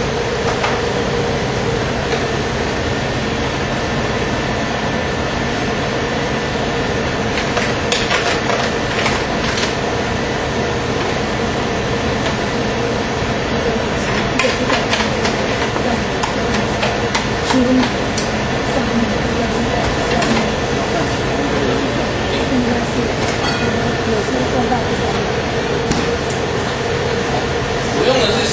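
Steady mechanical hum with a faint tone in it, broken by scattered clicks and light knocks, mainly in two clusters about a third and halfway through.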